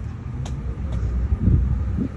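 Low rumble of road traffic on a street, swelling about one and a half seconds in.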